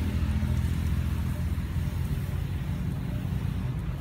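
A steady low motor rumble.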